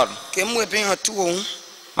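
A woman's voice at a microphone, a few drawn-out syllables that rise and fall in pitch, not in English, dropping off near the end.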